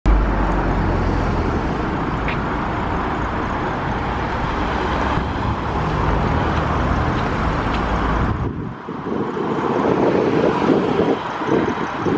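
Road traffic: a van and cars driving past, a steady rumble that drops away about eight and a half seconds in, then a car coming close near the end.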